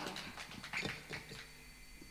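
Scattered clapping and a few brief calls from a small audience, thinning out over the first second and a half. Then quiet room tone with a faint, steady high-pitched tone.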